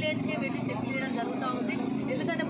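A woman speaking, with a steady low hum of a vehicle engine running beneath her voice.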